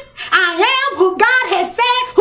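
A woman's voice, high-pitched and excited, in a sing-song delivery close to singing, after a brief pause at the start.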